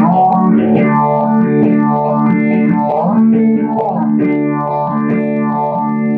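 Electric guitar played through a Boss DS-1 distortion and a Boss PH-1R phaser: held, distorted chords with a sweep that rises and falls through the tone again and again.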